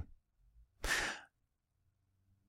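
A man's single audible breath close to the microphone, about half a second long, about a second in; otherwise near silence.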